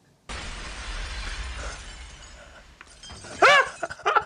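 A sudden loud crash from the anime film's soundtrack, a burst of noise with a low rumble that dies away over about two and a half seconds. Near the end a man bursts out laughing.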